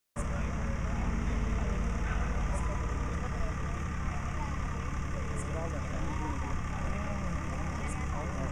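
A steady low hum with a thin steady tone above it, under the indistinct chatter of many voices.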